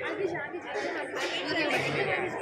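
Indistinct chatter of several overlapping voices in a large hall.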